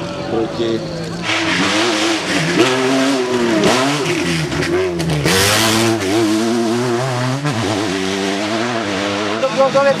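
Rally cars on a dirt special stage, engines revving hard with the pitch dropping and climbing again at each gear change. About five seconds in, a hiss of gravel and tyre noise as a car passes.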